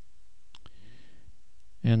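Two faint, quick clicks about half a second in and a faint low murmur, then a man's voice starts speaking near the end.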